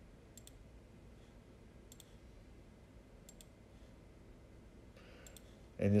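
Computer mouse clicking three times, each click a quick double tick of button press and release, over a faint low room hum.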